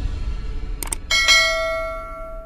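Subscribe-animation sound effects: a quick double mouse click just before a second in, then a notification bell chime that rings out and slowly fades, over a low steady rumble.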